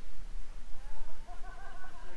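A rooster crowing once in the distance, a single call of about a second, over a low steady rumble.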